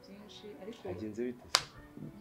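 Soft speech, with one sharp click about one and a half seconds in that is the loudest sound.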